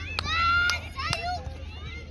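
Children shouting during a junior football game. One long, high-pitched yell comes in the first second, followed by shorter calls and a few sharp clicks.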